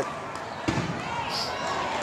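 Wheelchair rugby play on a gym court: steady background hall noise with a single sharp knock about two-thirds of a second in.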